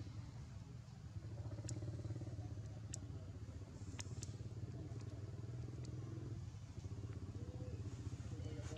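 A motor engine running steadily at low pitch, growing a little louder about a second in, with a few short sharp clicks over it.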